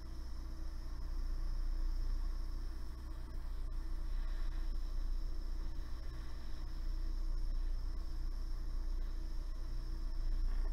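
Jewellery soldering torch burning with a steady hiss, its flame held on a metal pendant to heat it up to solder-flow temperature.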